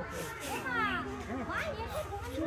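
Background chatter of several people's voices, with children's high calls rising and falling over it and a low steady rumble beneath.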